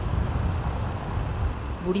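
Road traffic: a steady low engine rumble.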